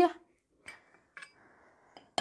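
Two faint clinks of a metal spoon against a small glass bowl, about half a second apart, as sticky coffee is scraped out of it.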